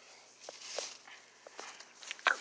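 A few faint, soft taps and a brief shuffle.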